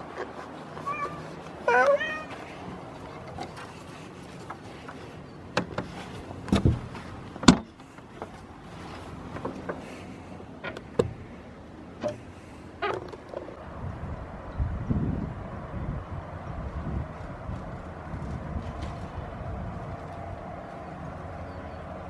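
A domestic cat meows once, about two seconds in, followed by a scattering of sharp knocks and clicks.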